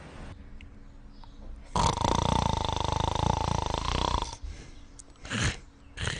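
A man snoring: one long, loud, rattling snore from about two seconds in, then two shorter snoring breaths near the end.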